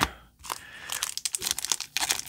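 Clear plastic wrap crinkling and crackling as a taped, plastic-wrapped stack of trading cards is handled, a run of quick sharp crackles starting about half a second in.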